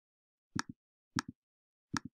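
Computer mouse button clicked three times, about two-thirds of a second apart, each click a quick press-and-release double tick.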